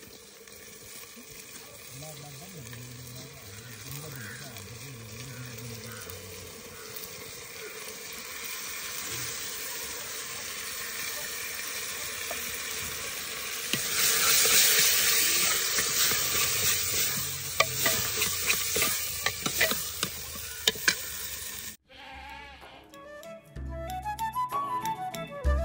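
Red lentils frying in a metal pot over a wood fire, sizzling steadily while a steel ladle stirs and clinks against the pot; the sizzle grows much louder a little past halfway. Near the end the sound cuts off abruptly and flute music starts.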